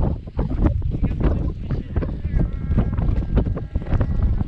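Wind buffeting the microphone, a loud, uneven rumble with scattered knocks and clicks.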